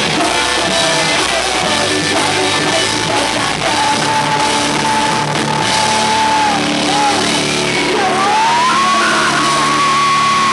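Live rock band playing loudly, with distorted electric guitars, bass and drums under a shouted, sung lead vocal. The singer holds one long note through the middle, then slides up into another held note near the end.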